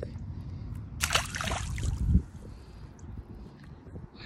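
Pond water splashing and sloshing as a large black crappie is lowered into the shallows and released: a burst of splashing about a second in, lasting about a second and ending in a heavy thump.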